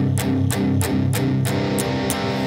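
Electric guitar tuned down to drop C, a low chord picked over and over in a steady rhythm, about three strokes a second.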